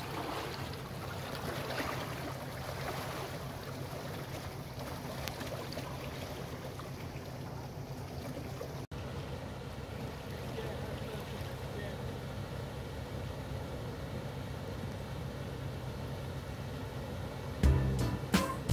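Water churning in a canal lock chamber over the steady low running of a narrowboat's engine; the rushing is stronger in the first half, and after a brief break about nine seconds in the engine's steady running carries on.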